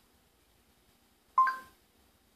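Short electronic two-tone beep from a Samsung smartphone's speaker about one and a half seconds in, rising from a lower to a higher note: the Google voice search tone marking that it has stopped listening and is processing the spoken command.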